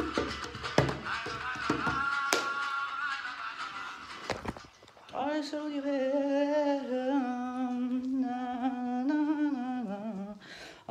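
Music with a quick run of percussive clicks stops about two seconds in, leaving a held high note that fades out by four seconds. From about five seconds a woman hums a slow tune with small steps in pitch.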